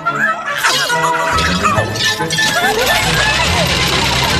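Cartoon soundtrack: dramatic music under high, shrill cartoon imp voices yelling, with a shattering crash. A deep bass comes into the music just over a second in.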